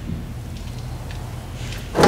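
Engine oil starting to run from the sump's drain hole into a plastic drain pan as the drain plug comes out, a splashing hiss that rises near the end. Under it, a steady low hum.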